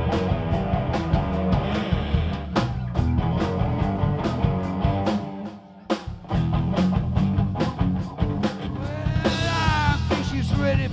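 Live rock band, electric guitar, bass guitar and drum kit, playing an instrumental passage of the song with regular drum hits. The band drops out for a moment about five and a half seconds in, then comes back in, and a held, wavering note rises over it near the end.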